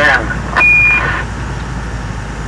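Steady low drone of a vehicle driving on the highway, heard from inside the cab. About half a second in comes a short burst of hiss carrying one flat, high-pitched electronic beep that lasts under half a second.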